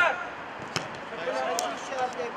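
Players shouting on a minifootball pitch: a loud call at the start, then more calls in the second half. A single sharp kick of the ball comes a little under a second in.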